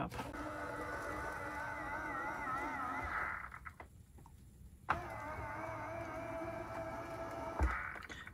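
Motors inside a round Starlink dish whining as the terminal tilts itself on its mast. The pitch wavers; the whine stops for about a second and a half in the middle, then starts again sharply. The movement shows that the terminal is powered and booting through its newly fitted RJ-45 connection.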